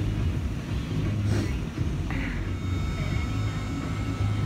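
A truck engine idling, a steady low hum, with a faint high steady tone coming in about halfway through.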